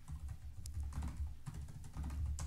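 Typing on a computer keyboard: a run of quick, irregular keystroke clicks over a low steady hum.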